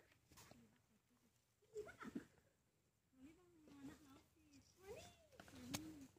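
Faint, low-level voice sounds: a few drawn-out calls whose pitch rises and falls, about two, three-and-a-half and five seconds in, with a few light clicks between them.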